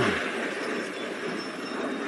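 Audio of a car wrecking on a street, from a phone video: a steady noisy rush with no clear pitch.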